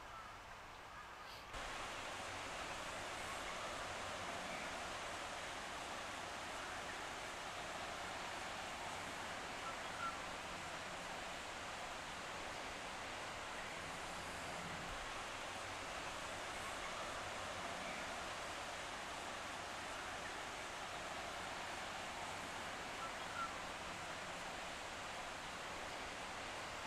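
Steady, even hiss of outdoor background noise that starts suddenly about a second and a half in and holds unchanged, with a faint tick near ten seconds.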